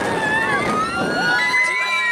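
Several riders on a swinging pendulum ride screaming together: long overlapping screams that hold their pitch and drop away at their ends. A rush of wind noise underneath thins out about halfway through.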